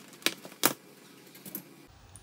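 A steel springform cake pan being opened: a few short metallic clicks, about three across the two seconds, as the side latch is released and the ring is handled.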